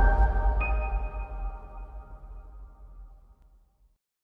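Short logo music sting. A sustained chord peaks with a deep low boom, a high ringing tone joins about half a second later, and the whole sting fades away over about three seconds.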